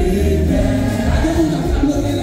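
Church congregation singing a French hymn together over a steady low bass accompaniment.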